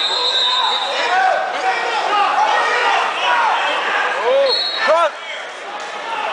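Wrestling shoes squeaking on the mat, several short squeaks with the loudest about five seconds in, over echoing crowd chatter in a gymnasium.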